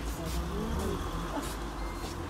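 Steady low rumble inside the lower deck of an Alexander Dennis Enviro400H MMC diesel-electric hybrid double-decker bus, with faint passenger voices over it.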